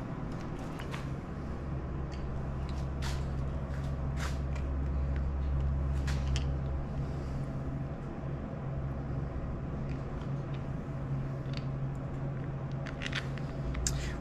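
A steady low hum with a few light clicks and taps scattered through it, from hands handling the snowmobile's handlebar brake lever and reservoir.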